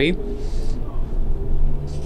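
Steady low rumble of a MAN Lion's City 18 E electric articulated bus heard from inside the cabin while it drives, with a faint steady hum over it.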